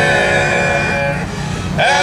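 Barbershop quartet of four men singing a cappella in close harmony, holding one chord that breaks off a little past a second in. A new sung chord begins near the end, sliding up into pitch.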